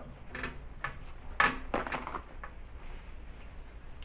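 Eating sounds from a seafood boil of king crab legs and mussels: a few short sharp clicks and crackles, the loudest about a second and a half in.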